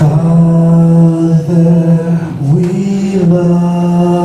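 A man's voice singing long, held low notes, rising a step about two and a half seconds in and falling back just after three seconds.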